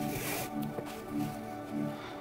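Background music with a repeating pattern of low notes. In the first half-second a flat shoelace is pulled quickly through the eyelets of a leather sneaker, a short rasp.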